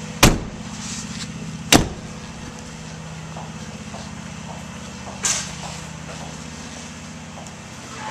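Two doors of a Chevrolet Silverado extended-cab pickup shutting about a second and a half apart: the rear half door, then the front door. The truck's engine idles steadily underneath, and there is a softer, shorter knock about five seconds in.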